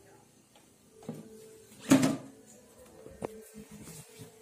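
Quran recitation (qiraah) playing in the background, a chanting voice holding long notes. A sudden thump about two seconds in is the loudest sound, and a sharp click follows just after three seconds.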